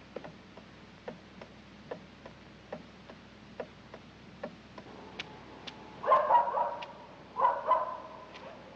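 Soft regular ticking, about two ticks a second, then a dog barking twice, loudly, about six and seven and a half seconds in.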